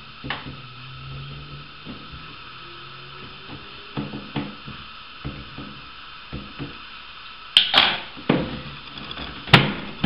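Scattered clicks and knocks of a hand tool and plastic fittings inside a toilet cistern while the inlet valve is worked on, with a few louder sharp knocks near the end.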